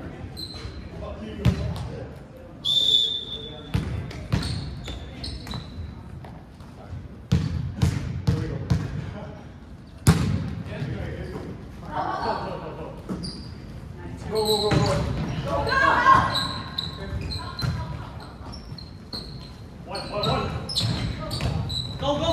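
Indoor volleyball rally in an echoing gymnasium: sharp smacks of the ball being served, passed and hit, with short high sneaker squeaks on the wooden floor. Players shout calls in bursts, loudest around the middle and near the end.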